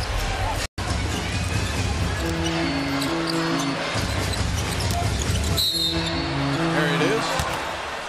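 Basketball game sound in a crowded arena: steady crowd noise with a ball being dribbled on the hardwood court. A short riff of held notes plays twice, about two and six seconds in. The sound cuts out briefly under a second in.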